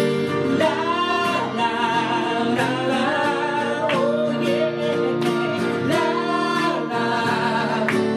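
Two men singing a song together, accompanied by a nylon-string classical guitar and a steel-string acoustic guitar.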